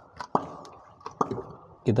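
Light clicks and knocks of spark plug wire caps being pulled off a Toyota Kijang's spark plugs, a few sharp ones within the first second or so, each trailing off briefly.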